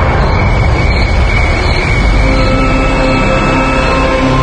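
Dramatic background music: sustained steady notes held over a dense, noisy low layer, at an even level throughout.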